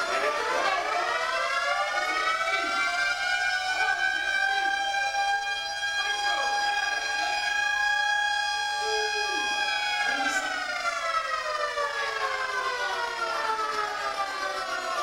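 Electronic siren-like tone from the show's sound score. It rises over the first few seconds, holds one steady pitch, then glides slowly down over the last few seconds.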